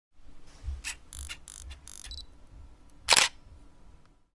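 Camera sound effect: a run of short clicks and whirs, then a brief high beep near two seconds, then a single loud shutter click a little after three seconds.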